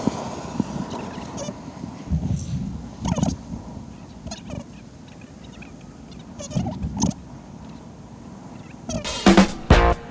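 A few short bird calls over low steady outdoor noise, then background music with a steady beat starting about a second before the end.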